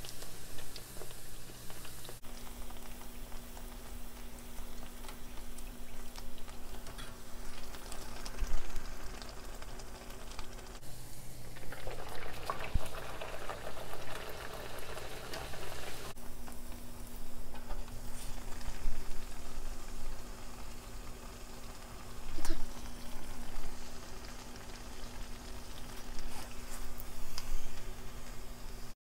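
Bake dough deep-frying in hot vegetable oil: a steady sizzle of bubbling oil, with a few sharp knocks and a low hum underneath.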